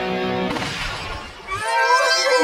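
Cartoon bumper jingle: a held guitar chord that breaks off about half a second in into a noisy splat-like burst, followed near the end by rising sound-effect tones.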